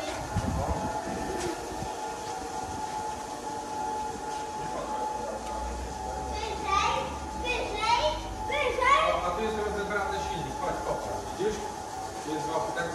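Two-post workshop car lift's electric hydraulic pump running steadily with a thin whine as it raises the car.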